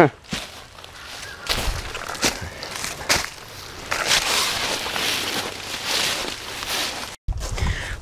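Footsteps crunching and rustling through dry fallen leaves, with scattered irregular knocks, after a short laugh. The sound breaks off abruptly near the end.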